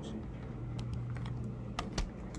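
Light, irregular clicks and taps, about half a dozen, most of them in the second half, like keys being pressed or a stylus tapping on a tablet, over a steady low electrical hum.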